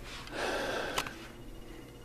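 A man's audible breath drawn in between sentences: a short, soft, noisy intake lasting under a second, with a brief click near its end.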